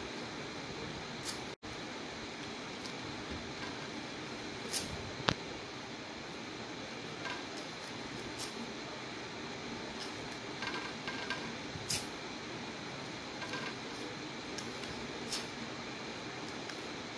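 Paper being torn into small pieces and pressed down, heard as short, irregular crackles a second or more apart, with a brief run of them about eleven seconds in, over steady background hiss.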